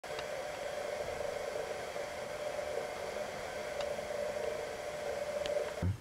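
Steady background noise: an even hiss with a constant hum, and a few faint ticks.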